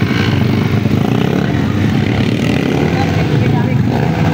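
Underbone motorcycle engine running steadily, with people talking in the background.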